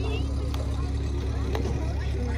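Steady low rumble and engine drone of a moving hayride wagon, with faint voices over it.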